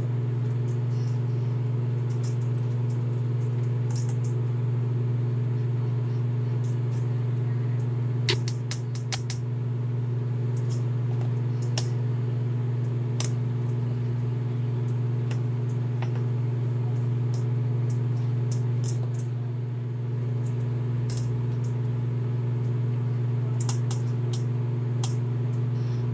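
Steady low mechanical hum of a kitchen appliance motor running throughout, with scattered light clicks and clatters from work at the counter, a cluster of them about eight to nine seconds in.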